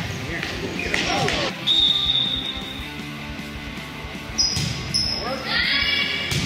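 Indoor gym sounds during a youth volleyball game: voices echoing in the hall, a high steady whistle about two seconds in that lasts a little over a second, and a few short squeaks near the end, typical of sneakers on the gym floor.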